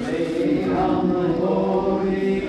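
Hindu devotional chanting: voices singing in long held notes.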